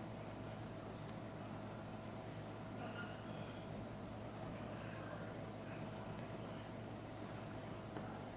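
Steady low electrical hum and hiss of an open microphone line, with a thin steady tone above it.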